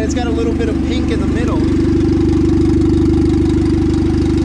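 Turbocharged Honda Civic D16 four-cylinder engine idling steadily while air is burped out of its cooling system through a coolant funnel.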